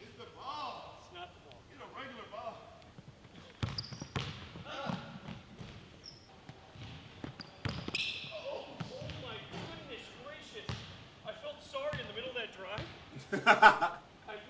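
Basketball bouncing on a hardwood gym floor, a few separate sharp bounces, under faint talk on the court. Near the end a short, loud burst of laughter.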